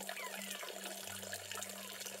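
Thin stream of water pouring and splashing into a pond, a steady trickle, with soft sustained tones underneath.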